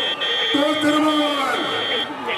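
A man's voice in long drawn-out calls, each note held for about a second and falling away at its end, over the noise of a crowd. A steady high-pitched tone sounds on top of it and breaks off a few times.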